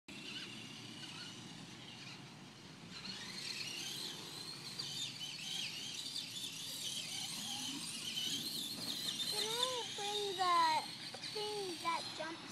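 Brushless electric motors of Traxxas Stampede VXL RC trucks whining, the high pitch wavering up and down with the throttle over steady outdoor noise. Near the end, a child's high voice calls out a few times.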